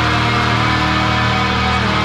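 Black metal music: distorted electric guitars hold a sustained chord with no drums playing.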